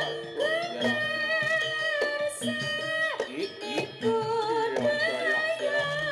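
Live jaranan accompaniment from a Javanese ensemble. A long, wavering melody line with small slides in pitch runs over low struck notes that repeat at an even pulse.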